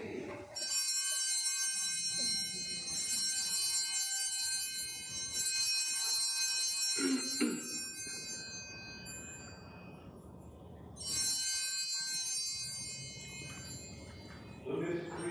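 Altar bells ringing at the elevation of the chalice during the consecration: one long shimmering ring that fades over about seven seconds, then a second ring starting about three seconds later as the celebrant genuflects.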